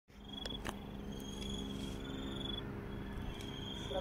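Night insects trilling in repeated high-pitched bursts, each about half a second to a second long, over a steady low hum. Two light clicks come in the first second.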